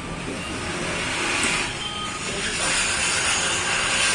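Road traffic noise, a steady hiss that swells as vehicles pass.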